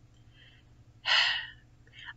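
A woman's sharp, breathy gasp about a second in, lasting about half a second, with a fainter breath before it.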